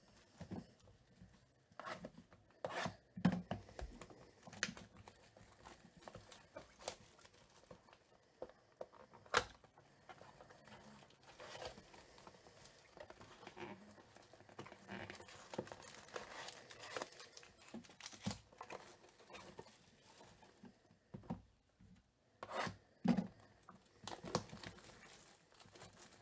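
Hands opening sealed cardboard boxes of baseball cards: wrapping tearing and crinkling, with scattered clicks and taps of cardboard being handled.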